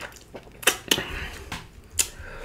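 Close-miked eating: three sharp crunches, two close together at about two-thirds of a second and one second in, a softer chewing rustle after them, and a third crunch at the end.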